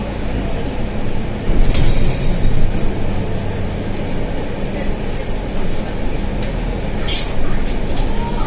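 Scania N320 city bus's diesel engine running with a steady low drone, heard inside the bus as it drives slowly. A few short hissing sounds come through, the sharpest about seven seconds in.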